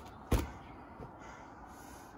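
A single sharp smack of a blow in a backyard wrestling attack, about a third of a second in, then a fainter knock about a second in.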